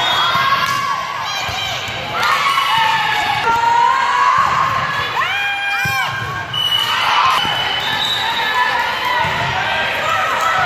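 Indoor volleyball rally on a gym court: players and spectators shouting, a few sharp squeaks of sneakers on the floor, and the ball being struck.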